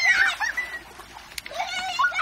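Children squealing in play: a long high-pitched shriek that rises and falls at the start, then a shorter high call near the end.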